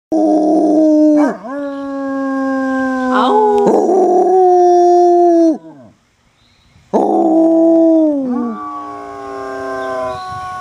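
Basset hound howling: long, drawn-out howls with short breaks, each sliding down in pitch at its end. About a second of quiet falls just past the middle before the next howl starts.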